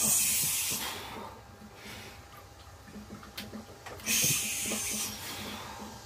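A weightlifter's forceful breaths out while pressing a heavy barbell, two of them: one right at the start lasting about a second, a second about four seconds in.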